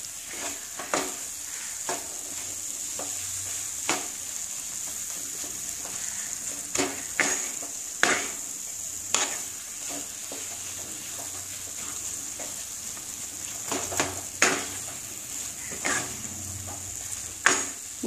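Moong dal halwa sizzling steadily in a nonstick frying pan while a wooden spatula stirs and scrapes it against the pan in irregular strokes, about one every second or two.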